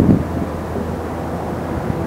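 Steady low rumble of wind on the microphone over a low, even hum.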